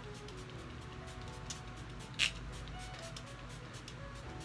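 One short hiss of a fine-mist pump spray bottle misting the face, about two seconds in, over steady background music.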